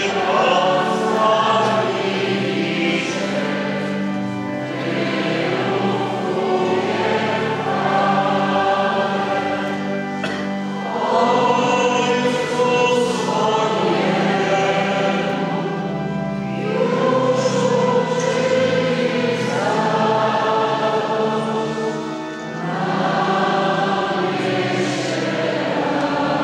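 A choir singing a slow hymn in long held phrases, with brief breaks between phrases about every six seconds and a steady low accompaniment underneath.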